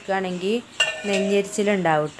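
A singing voice holding long, sliding notes, with the clink and scrape of a steel ladle against an aluminium bowl, two sharp clinks about a second and a second and a half in.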